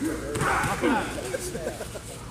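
Shouting voices, with a short sharp smack-like noise about a third of a second in.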